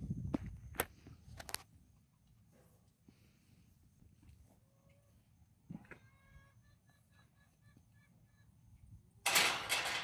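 Hand-pump sprayer wand hissing in a sudden loud burst near the end, as spray is let out onto cattle. Earlier come a few sharp clicks and then a run of short, high chirps.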